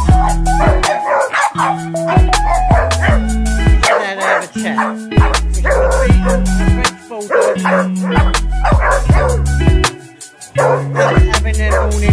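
Background music with a deep bass line of held notes repeating about every two seconds, over which a dog vocalizes in play, short wavering calls like a chat, while wrestling with another dog.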